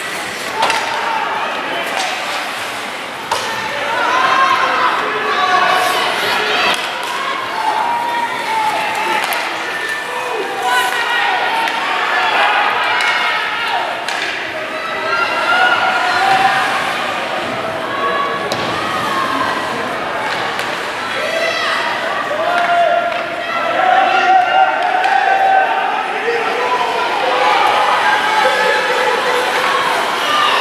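Spectators and players shouting and calling during an ice hockey game, many voices overlapping, with scattered knocks and slams of sticks, puck and bodies against the boards.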